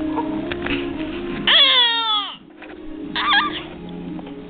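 A baby's high-pitched squeal, loud and falling in pitch over about a second, then a shorter, higher, wavering squeal near the end, over steady background music.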